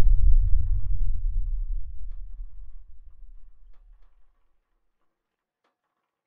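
A deep, low rumble that fades away over about four seconds into silence, with a few faint clicks.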